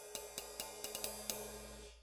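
Paiste 602 18-inch flat ride cymbal from the late 1960s, played alone with a drumstick in a quick ride pattern: dry pings about six or seven a second over a light ringing wash. Heard on its own it has the plain, dull sound that the player says you might call 'crap'.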